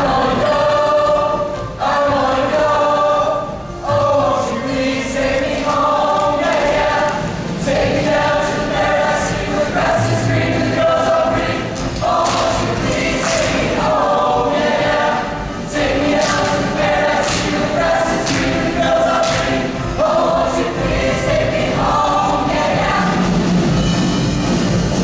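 Large mixed-voice show choir singing together in full chords, in phrases of a second or two separated by short breaks.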